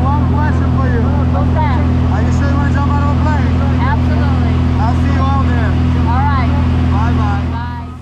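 Steady drone of a small propeller jump plane's engine heard from inside the cabin, with voices talking over it; it fades out near the end.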